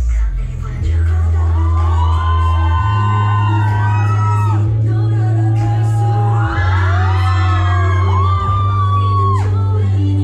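Pop song for a cover dance played loudly over a club sound system: deep, held bass notes under a sung melody, coming in at full strength about a second in. Whoops from the audience over the music.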